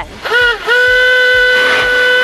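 A single steady whistle-like tone, starting with a short rise and dip in pitch and then held at one unwavering pitch for about two seconds, with a faint hiss under it.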